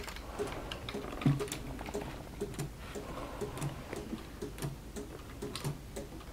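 3D-printed pendulum clocks ticking, their escapements giving several short ticks a second. There is one louder knock about a second in.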